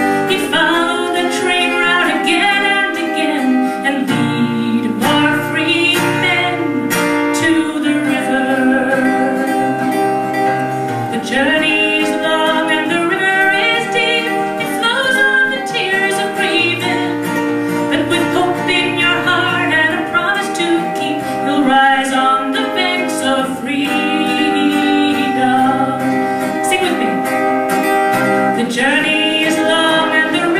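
A woman singing a folk song, accompanying herself on an acoustic guitar.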